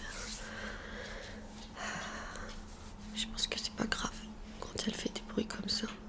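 Close-miked hands rubbing together and working face cream over the skin, with soft breathy whisper-like rustling in the first half. A run of small clicks and light taps follows from about three seconds in.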